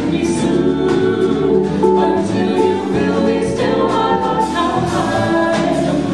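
Vocal jazz quintet singing in close harmony without recognisable words, scat-style, backed by piano, guitar and drums with a steady beat of light cymbal strokes.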